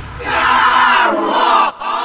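A sampled crowd shouting in a trance/techno track's breakdown, with the kick drum and bass dropped out and the low end filtered away; the shout breaks off briefly near the end and comes back.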